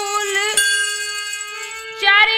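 A woman singing a devotional Hindi line to her own harmonium accompaniment: the sung pitch bends at first, then about half a second in a single note is held steady and slowly fades.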